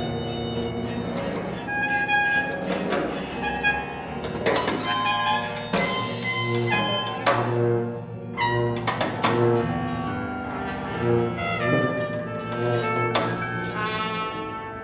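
Small acoustic ensemble playing a free improvisation: low tuba notes and bowed cello tones under higher wind lines, cut through by sharp percussion strikes that ring off.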